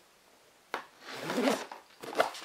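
Plastic shrink-wrap film on a cardboard box pierced with a sharp click, then torn and pulled off for about a second.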